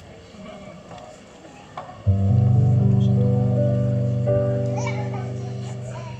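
Low audience chatter with children's voices, then about two seconds in a keyboard plays loud sustained chords that slowly fade, opening a song.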